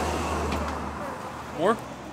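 Low, steady rumble of a motor vehicle in the street traffic, fading after about a second, with a short spoken "More?" near the end.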